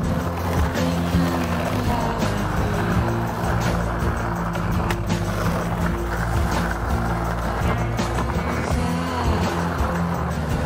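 Skateboard wheels rolling on asphalt, a steady rumble with a few sharp knocks from the board, mixed with background music.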